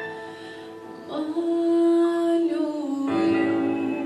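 A woman singing a pop ballad live over instrumental accompaniment. The accompaniment plays alone for about a second, then she comes in with a long held note and starts a new phrase about three seconds in.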